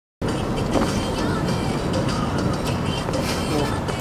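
Road and engine noise inside a moving car's cabin, a steady low rumble that starts abruptly a moment in, with scattered small knocks and rustles.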